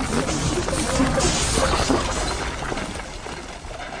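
Film soundtrack: background music mixed with the clatter of a tar-paving machine, with a hiss about a second in, fading a little toward the end.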